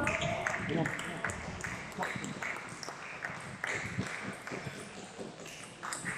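Table tennis balls clicking off bats and tables, a scattered, irregular string of short sharp taps, with voices murmuring underneath.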